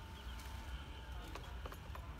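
Faint outdoor ambience: a low steady rumble with a few faint scattered clicks.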